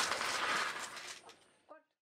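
Faint background chatter of a seated group, fading out to silence about a second and a half in.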